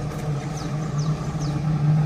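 A motor running steadily with a low, even hum. Three short, high, falling chirps come through it in the first second and a half.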